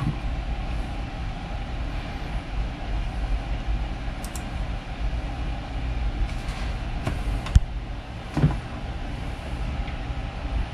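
Steady low electrical and fan hum from a desktop computer and its power inverter running, with a few short clicks, the sharpest about seven and a half seconds in.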